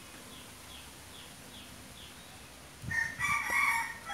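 A rooster crowing once near the end, a single call about a second long. Before it, faint high chirps repeat about twice a second.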